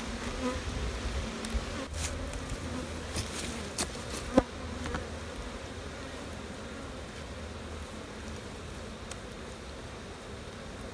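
Honeybees humming steadily around an open hive, with a few sharp clicks and knocks in the first half.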